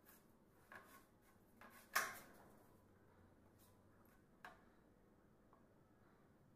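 Near silence broken by a few light knocks and clicks, the loudest about two seconds in. These are handling sounds from paint being worked by hand on a wooden board.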